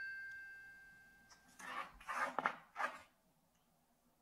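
A glockenspiel-like chime note rings out and fades over the first second or so. It is followed, about two to three seconds in, by a few short, noisy scraping or rustling sounds.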